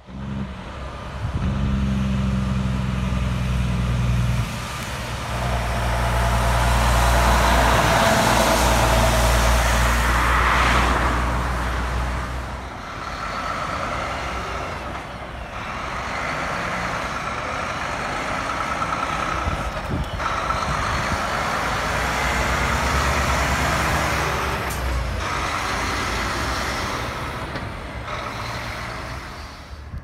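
Heavy diesel trucks driving past in a run of short clips cut together: engines running with a deep drone and tyre noise, each pass swelling and fading, with abrupt changes between clips.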